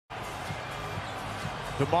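A basketball being dribbled on a hardwood court, a low bounce about every half second, over steady arena background noise.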